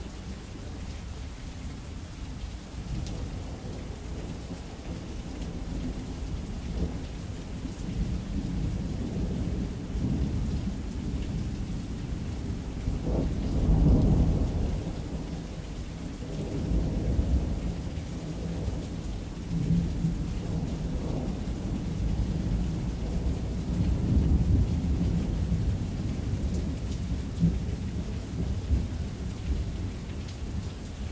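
Steady rain with rolling thunder. The deep rumbles swell and fade several times, loudest about halfway through.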